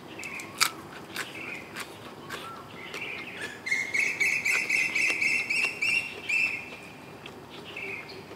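Crisp crunching bites as raw bitter gourd is eaten, under a bird calling: short chirps, then one long, slightly rising call of nearly three seconds through the middle, the loudest sound.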